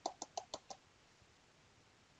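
A quick run of light taps, about six a second, on a cardboard box of Polycell filling plaster held over a bowl, shaking powder out. The taps stop under a second in.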